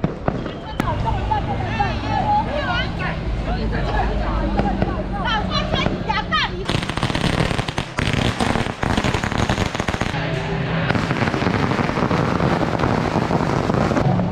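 A string of firecrackers going off in a rapid, continuous crackle from about halfway through to the end. Before it starts, people's voices in the street crowd.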